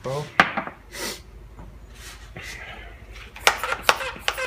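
Workbench handling sounds: a few sharp clicks and knocks of small carburettor parts and a plastic spray bottle being picked up. There is a short hiss about a second in, and a brief bit of voice at the very start.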